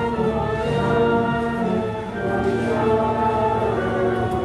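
A church choir and congregation singing a hymn together, many voices holding long notes.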